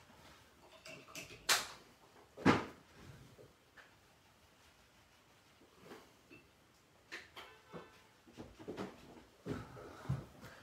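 Two sharp knocks about a second apart, like a hard object set down on a table, then a few lighter clicks and taps near the end over quiet room tone.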